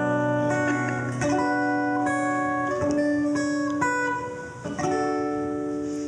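Solo acoustic guitar playing the instrumental intro of a rag, strumming a series of ringing chords that change every second or two.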